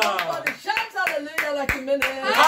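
A man singing a worship song, with sharp claps in time with it.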